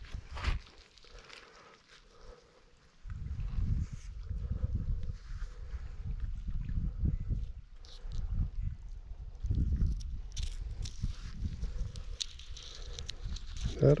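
Rubbing and rumbling handling noise on a body-worn camera as a magnet-fishing rope is thrown and then worked hand over hand. It goes quiet for a couple of seconds near the start, then rumbles irregularly from about three seconds in.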